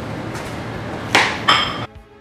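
A spoon knocking twice against a stainless steel saucepan of hot strawberry jam, the second knock leaving a short metallic ring, over a steady hiss. Music cuts in abruptly near the end.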